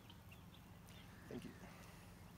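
Near silence with a steady low background hum. One brief, faint pitched sound occurs about a second and a half in.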